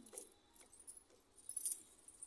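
Light jingling and clinking of small metal or glass things, loudest about three-quarters of the way in.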